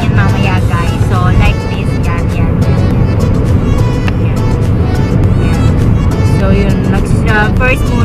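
Steady road and engine rumble inside a moving car's cabin, under background music and bits of a woman's voice near the start and near the end.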